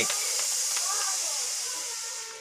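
Steady high-pitched hiss, with a faint voice in the first half and no guitar or singing.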